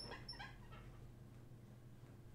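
Near silence: room tone with a faint steady low hum, and two faint, brief high-pitched chirps in the first half second.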